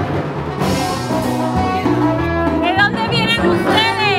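Live band playing upbeat music, with trumpet and trombone lines over hand drums and a steady bass.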